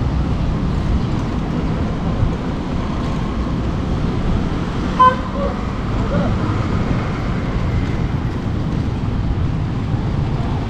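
Steady low road rumble while riding an electric scooter over paved street, with no engine note. A single short, sharp horn-like beep sounds about five seconds in.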